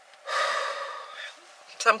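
A woman's single deep, audible breath through an open mouth, lasting about a second and fading away, taken while she is crying and trying to compose herself.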